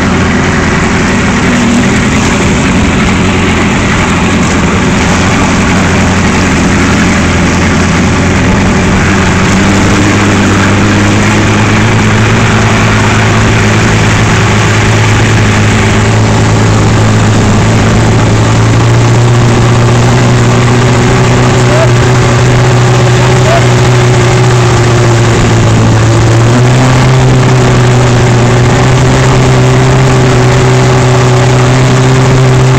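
Boat's outboard motor running steadily, towing an inflatable ringo tube, its pitch climbing gradually as the boat gathers speed and stepping up again near the end, over wind and rushing water.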